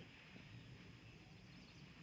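Near silence: faint outdoor background noise with a thin, steady high tone.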